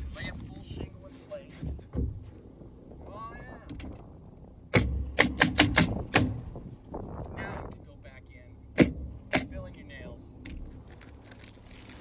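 Pneumatic coil roofing nailer firing nails through asphalt shingles: a quick run of about six shots around five seconds in, then two more a few seconds later.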